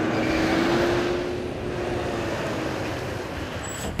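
City bus driving slowly through a manoeuvre, its engine and drivetrain running with a steady whine that rises slightly in pitch and fades away after about two seconds, over a wash of running noise.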